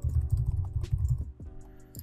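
Computer keyboard typing, scattered keystrokes, over background music with steady held tones and a strong bass.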